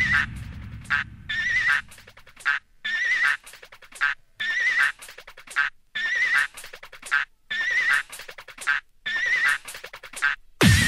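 Hard house DJ mix in a breakdown: the kick and bass fade out over the first couple of seconds, leaving a short, high sample with a wavering pitch that repeats about once a second over a thin backing.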